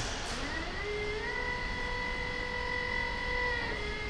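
A machine whine that rises in pitch over about the first second, holds a steady pitch, then dips a little near the end, over a low rumbling background.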